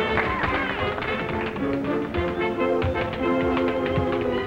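Tap dancing: quick runs of sharp heel-and-toe clicks from a dancer's shoes on a hard floor, over a dance band's music.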